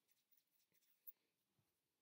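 Near silence: room tone, with one faint, brief sound about a second in.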